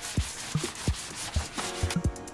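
Cloth wiped briskly back and forth over a plastic cutting mat, a steady rubbing scrape, with a low thumping beat of background music underneath.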